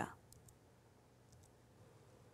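Near silence: faint room tone with a few very faint clicks.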